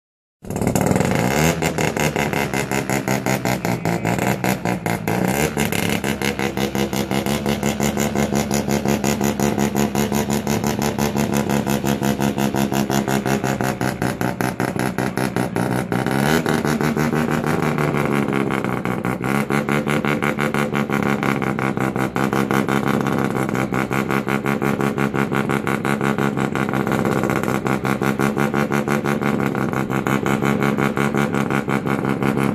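Bridgeport-ported 13B turbo rotary engine in a Toyota KE25 Corolla idling with a choppy, pulsing beat. The revs rise and fall a few times: about five seconds in, at about sixteen seconds, and again around twenty seconds.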